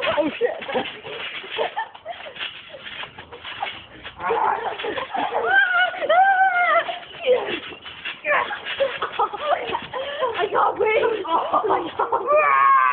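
Children yelling, shrieking and laughing in high voices while wrestling on a trampoline, loudest in stretches about four to seven seconds in and again in the last few seconds, with scattered thumps of bodies landing on the mat.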